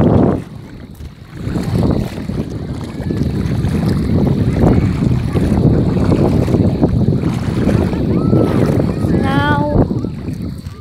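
Wind buffeting the microphone over water sloshing and splashing as someone wades through shallow sea water. Near the end there is a short wavering voice-like call.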